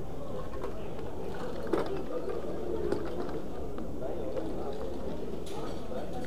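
Indistinct background chatter of a busy indoor market, with a couple of sharp clicks from small objects being handled in a pile of junk.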